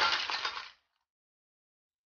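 Cooked white clams tipped from a wok into a stainless steel bowl, the shells clattering and clinking against each other and the metal bowl. The clatter stops within the first second.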